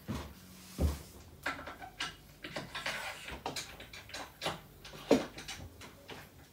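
Track-saw clamps being fitted and tightened on a guide rail: a run of sharp clicks and light knocks, with a dull thump about a second in and a sharper knock about five seconds in.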